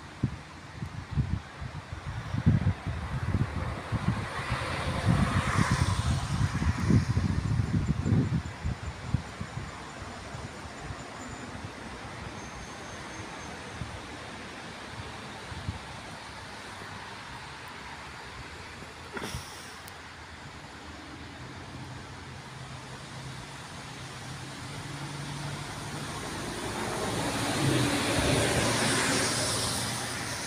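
Outdoor traffic ambience: wind gusting on the microphone for the first several seconds, then a steady low hum. A vehicle swells up and fades away near the end, and there is a single sharp click about two-thirds of the way through.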